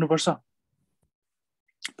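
A man speaking for the first half-second, then dead silence for over a second, then his voice starting again near the end.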